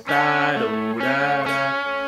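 Solid-body electric guitar playing a slow single-note lead phrase, about three held notes, the second gently rising and falling in pitch.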